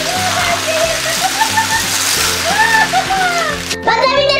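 Small beads pouring from a jar onto a tabletop in a steady pattering rattle, like rain, that stops just before the end. Background music plays under it.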